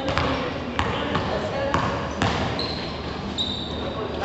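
Basketball bouncing on an indoor court floor as it is dribbled: about five sharp bounces in the first two and a half seconds, echoing in a large gym hall.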